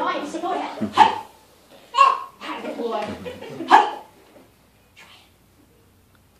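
Children's karate kiai yells: short, sharp shouts of "hey" about a second in, again at two seconds and just before four seconds, over some child chatter.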